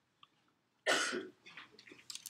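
A person coughing once, sharply, about a second in, followed by fainter scattered noises.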